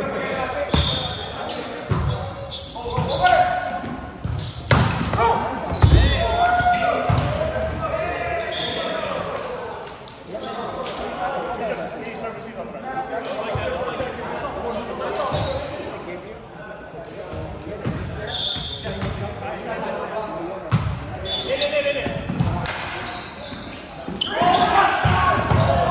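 Indoor volleyball game: scattered thuds of the ball being hit and landing, the loudest about six seconds in, among indistinct players' voices echoing in a large gym.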